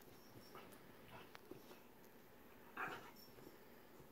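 Two corgis play-fighting, mostly quiet, with one short dog vocal sound from one of them nearly three seconds in.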